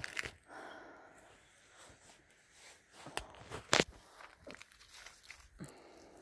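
Footsteps in sandals through dry grass and dead leaves: scattered crunches and rustles, the loudest crunch a little before four seconds in.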